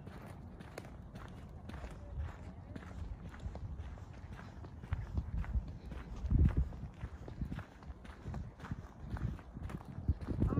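Footsteps on a dirt trail, a steady run of steps, over a low wind rumble on the phone's microphone that swells about six seconds in.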